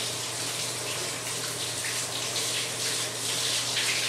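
Water from a hose running steadily over a flat mop finish pad and splashing down into a utility mop sink as the pad is rinsed of floor finish.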